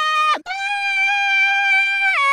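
Solo singing voice played back with heavy pitch correction (Cubase VariAudio autotune), the notes held dead level in pitch. One note breaks off just under half a second in, then a long high note is held to the end.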